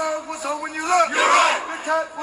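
A group of voices chanting a military marching cadence in unison, with held, sung notes and loud shouted syllables.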